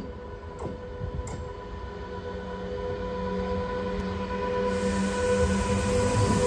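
Pair of BLS Re 465 electric locomotives hauling a container freight train and approaching. A steady whine grows louder, and a rushing rolling noise rises from about five seconds in as the lead locomotive draws close.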